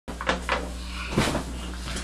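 Close handling knocks and bumps, three of them within the first second and a half, over a steady low hum.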